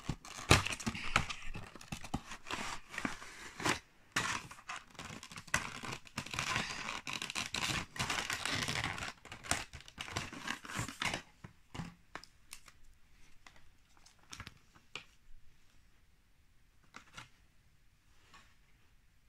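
Clear plastic packaging crinkling and rustling as a diecast model airliner is pulled from its box tray and unwrapped. The sound is dense for about the first eleven seconds, then thins to scattered light taps and clicks of handling.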